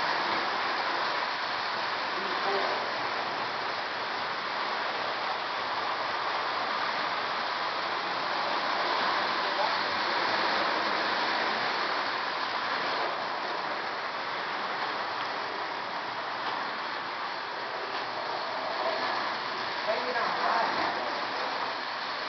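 Lionel O-scale model train running along ceiling-mounted track: a steady rolling rumble of wheels and motor.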